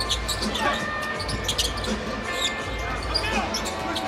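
Game sound from a basketball court: a basketball bouncing on the hardwood and sneakers squeaking, over steady arena crowd noise.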